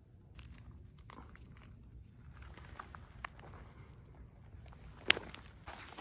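Faint footsteps crunching on roadside gravel over a low rumble, with a sharper crunch or click about five seconds in.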